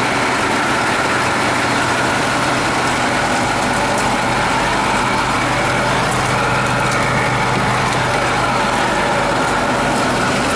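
International MaxxForce 7 V8 turbodiesel engine idling steadily.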